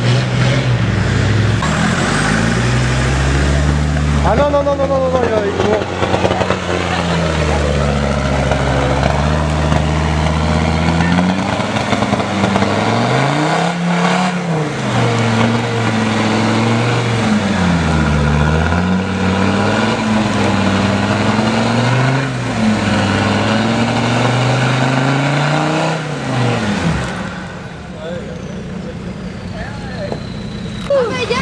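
Land Rover Defender 4x4's engine revving up and down again and again as it pushes through deep, rutted mud on a slope, the note falling away near the end as the truck pulls off.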